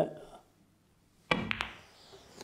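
Snooker cue tip striking the cue ball about a second and a half in, followed a split second later by sharper clicks as the cue ball hits the red.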